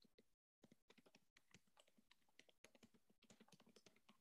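Near silence with faint, irregular clicking and tapping, like computer keyboard typing and mouse clicks, a few per second, coming through a video-call microphone that briefly cuts out to dead silence.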